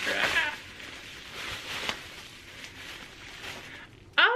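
Plastic bubble wrap crinkling and crackling as it is unwrapped from a small object by hand, loudest in the first half second and then softer rustling with scattered crackles.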